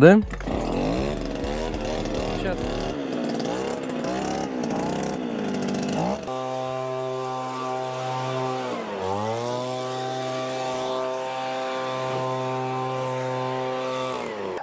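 Petrol leaf blower running. It is uneven at first, then from about six seconds in holds a steady high engine speed, with one brief dip in pitch near nine seconds before it picks back up.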